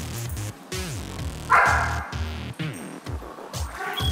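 Background music with a dog barking over it: one loud bark about a second and a half in, and a softer one near the end.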